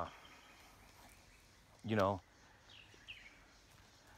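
Faint woodland background with a couple of short, faint bird chirps about three seconds in; a man's voice briefly in the middle.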